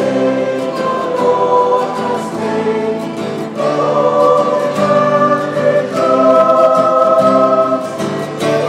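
Choir singing a hymn in long held chords. The chord changes about three and a half seconds in and again about six seconds in.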